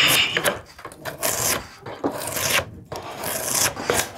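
Drawknife pulled in repeated strokes along a wooden blank clamped in a shaving horse, peeling off shavings to flatten one face of the blank. About five separate scraping strokes, each under a second long.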